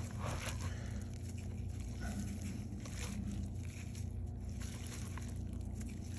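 Gloved hand kneading salmon roe in a plastic bucket to work the cure and dye through the eggs: soft, irregular wet handling sounds over a steady low hum.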